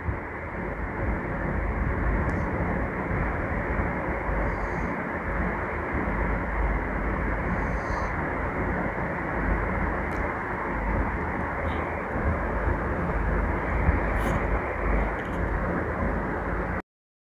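Steady rushing background noise, even in level, with a few faint ticks scattered through it.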